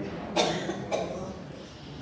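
A person coughing: two short coughs about half a second apart, the first the louder.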